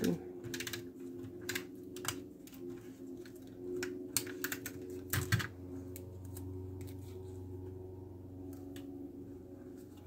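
Irregular light clicks and taps of small cardstock pieces being handled and pressed down onto a paper card, with a faint steady hum underneath. The clicks are most frequent in the first six seconds and thin out after that.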